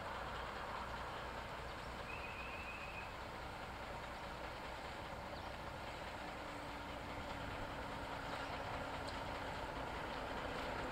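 Steady low engine noise from a diesel locomotive idling in the station yard. About two seconds in there is a short run of rapid high chirps.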